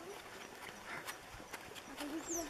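A pony's hooves clip-clopping softly at a walk on a sandy dirt track, a few irregular steps a second.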